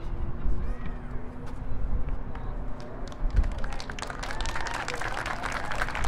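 Scattered hand clapping from a small crowd, thickening about halfway through, over a low rumble and faint talk nearby.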